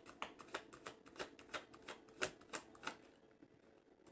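A deck of tarot cards being shuffled by hand: a faint, quick run of card slaps, about three a second, that stops about three seconds in.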